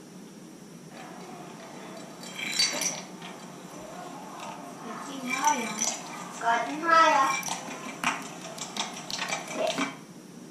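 Glass jar of sand and water being handled, with clinks and rattles, heard from a classroom recording played back through a laptop speaker. A high voice speaks briefly in the middle, and a quick run of clicks comes near the end.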